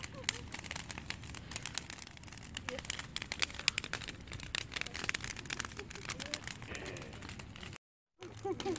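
Wood bonfire crackling, with many irregular sharp snaps and pops, and faint voices of people talking in the background.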